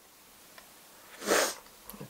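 A single short sniff, a quick breath in through the nose, about a second and a half in.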